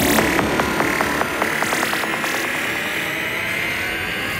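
Progressive psytrance track in a build-up: the deep kick and bassline drop away, and a percussive roll speeds up over a sustained synth tone and a noise wash.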